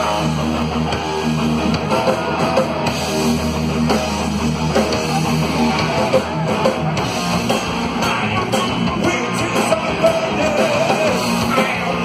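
Heavy metal band playing live: electric guitar, bass, drums and keyboards. A held low note gives way to a choppier riff about seven seconds in.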